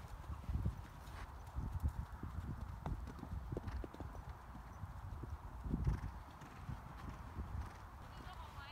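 Hoofbeats of a horse cantering on soft arena dirt: a run of dull, uneven thuds, one louder thud about six seconds in.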